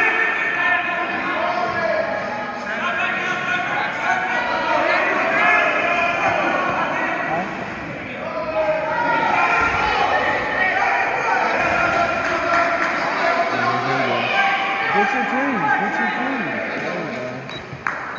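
Several spectators and coaches shouting over one another, calling out to the wrestlers, their voices echoing in a large gym. A single sharp knock comes just before the end.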